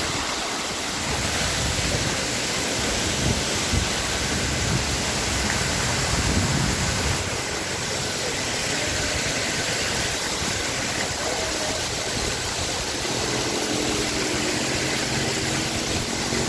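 Steady rush of a small waterfall pouring over rocks, a constant hiss of falling water.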